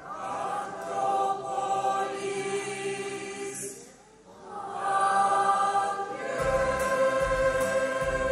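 Mixed choir singing a schlager song in held chords, with a short break about halfway through before the voices come back in. Near the end an accompaniment with a steady low beat joins in.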